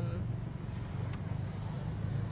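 An insect trilling in on-and-off spells of a single high-pitched tone over a steady low hum, with one sharp click about a second in.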